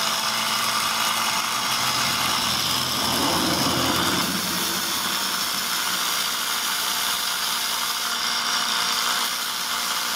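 Two spark plugs buzzing steadily as capacitor-discharge ignition units fire rapid multiple sparks through the coils. The ignition is running in regular multiple-spark-discharge mode, triggered by reed switches off a spinning magnet rotor.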